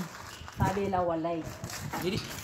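A person's voice: one drawn-out vocal utterance starting about half a second in and lasting about a second.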